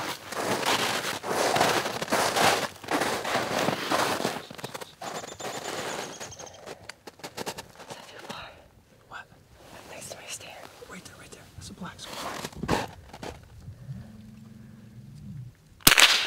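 Footsteps crunching through snow and dry brush, loudest in the first few seconds, then quieter with faint whispering. A single sharp, loud crack right at the end.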